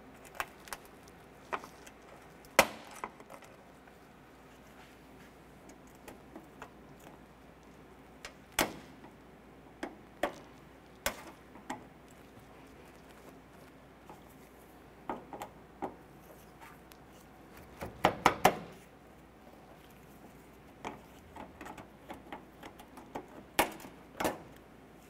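Plastic push-pin retainers on a car's radiator shroud being pried up and popped out with a metal forked trim tool: scattered sharp clicks and snaps, with a quick run of clicks a little after the middle.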